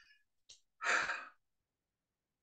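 A woman's single audible breath, like a short sigh, lasting about half a second, about a second in. A faint click comes just before it.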